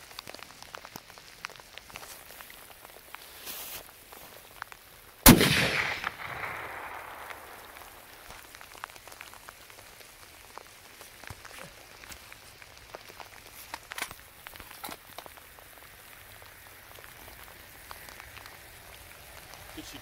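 A single scoped hunting rifle shot about five seconds in, sharp and loud, its report rolling away over roughly two seconds. It is the shot that drops a doe at about 160 yards.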